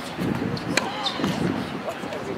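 A tennis ball struck by a racket in practice rallying: one sharp pop a little under a second in, with a few smaller clicks around it.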